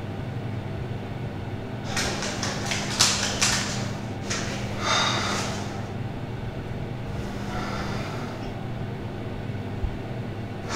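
A man breathing hard, a few loud, noisy breaths a second or two apart, with some short clicks and rustles among the early ones, over a steady low hum.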